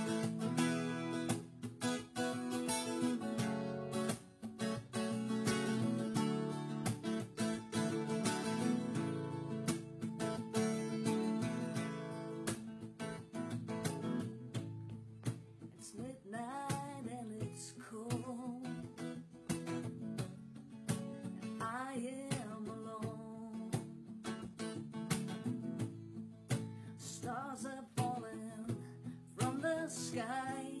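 Acoustic guitar strummed as a song's intro. A wavering melody line comes in about halfway through and returns near the end.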